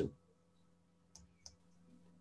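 Two faint, short clicks about a third of a second apart, a little over a second in, with near silence around them.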